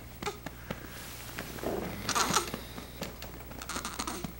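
Light, irregular pats and soft cloth rustling as a baby is patted and shifted upright on a lap to bring up a burp, with a longer rustle about two seconds in.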